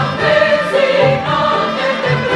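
Mixed choir singing with a chamber ensemble, over low drum beats.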